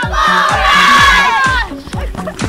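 A crowd of children yelling and screaming together, over dance music with a steady drum beat. The yelling tails off about one and a half seconds in.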